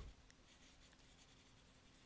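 Near silence, with the faint scratch of a stylus writing on a tablet.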